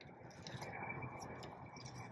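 Faint handling of tarot cards as they are drawn from the deck and laid down, with a soft, even rustle.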